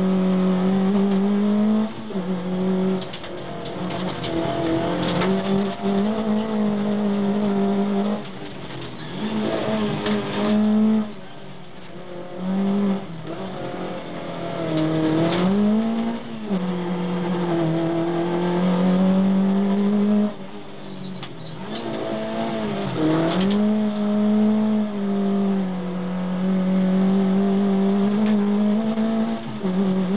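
Škoda Favorit race car's four-cylinder engine heard from inside the cabin, driven hard around a circuit. The engine note is held high and breaks off repeatedly every few seconds at lifts and gear changes, with a couple of quick rises in pitch.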